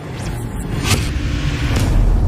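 Logo-intro sound effects: a deep rumble building in loudness, with two sweeping whooshes about a second apart.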